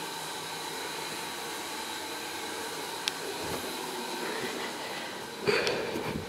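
Steady low hiss with a faint high whine, a single click about three seconds in and a brief louder rustle near the end.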